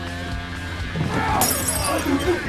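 Background music, then, about one and a half seconds in, a sudden crash of shattering glass.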